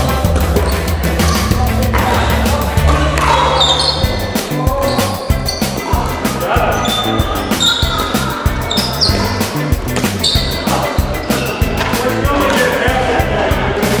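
Background music with a steady bass beat, mixed with the sharp pops of pickleball paddles striking a plastic ball and the ball bouncing on the concrete court.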